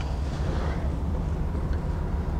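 The bus's Chevrolet 6.0-litre Vortec V8 gasoline engine idling, a steady low rumble heard from inside the cab.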